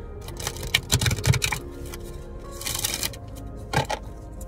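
A deck of oracle cards being shuffled by hand, over background music. There is a run of quick card clicks in the first second and a half, a short rush of card noise about three seconds in, and a couple more clicks near the end.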